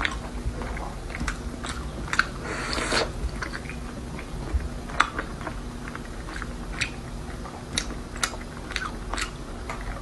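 Close-up chewing of soft red-braised pork belly with the mouth closed: scattered small wet clicks and smacks at an uneven pace.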